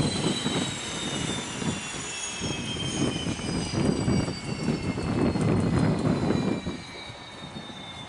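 Pilatus PC-12's Pratt & Whitney Canada PT6A turboprop engine spooling down after shutdown. The high turbine whine falls steadily in pitch over an uneven low rumble from the slowing propeller, and the rumble drops away about three-quarters of the way through.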